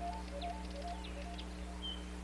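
Soft background music, a repeating three-note figure, fading out about a second in, with scattered bird chirps and a short whistled note near the end over a steady low electrical hum.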